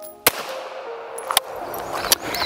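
Two gunshots from a Ruger PC Charger 9mm pistol, about a second apart, each a sharp crack with a fading tail.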